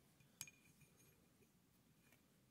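Near silence with one faint, short clink about half a second in, as a drill-press clamp ring is laid on an aluminium plate.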